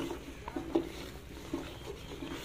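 Wooden spoon stirring thick suji halwa (semolina, ghee-oil, milk and dry fruit) in a steel pot on the heat, with a few soft, short sounds from the mixture and spoon scattered through.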